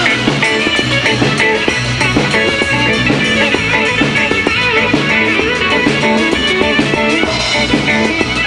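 Live band music with guitar and a drum kit keeping a steady beat.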